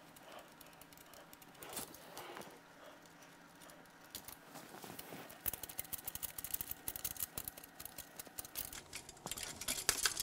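Light metallic clicking and rattling of steel diesel fuel injector hard lines and their union nuts as they are unscrewed and handled by hand. It is faint at first and gets busier from about halfway in.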